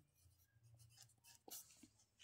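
Near silence, with faint scratches of a pen writing a word by hand on a textbook page.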